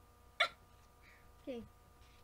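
A single short, sharp vocal burst from a girl about half a second in, the loudest sound here, followed near the end by a spoken 'okay'.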